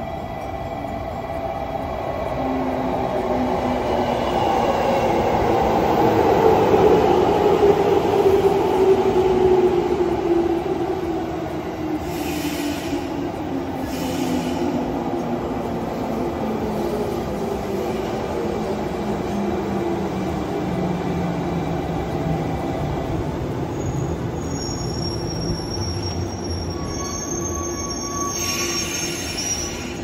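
JR Kyushu 415 series electric train arriving and braking to a stop: its motor and gear whine falls steadily in pitch as it slows, loudest as the cars pass, with wheel and brake squeal in the last few seconds as it halts.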